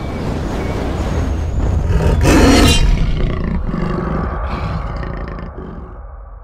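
A big cat's roar, a film-ident sound effect over a low rumble, building to its loudest about two and a half seconds in, then fading. Faint ringing tones carry on near the end.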